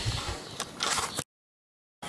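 Handling and rummaging noise: a rustling hiss, then a few clicks and knocks, until the sound cuts off dead a little over a second in.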